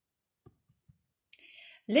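A few faint, short clicks in a quiet room, then a soft breath in just before a woman starts speaking near the end.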